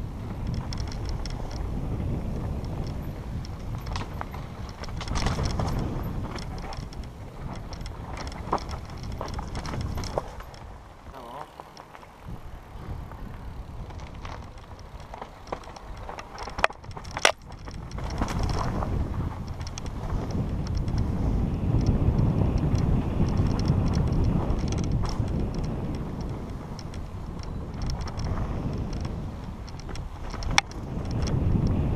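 Mountain bike riding fast down a dirt singletrack, heard from a camera on the rider: a steady low rumble of tyres and wind on the microphone, with the bike rattling over bumps. The rumble drops for a few seconds about a third of the way in, and two sharp knocks come just past halfway.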